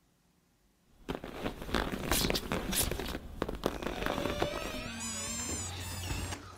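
After about a second of silence, a dense run of crackles and bangs starts and carries on, with a wavering whistle-like tone near the end.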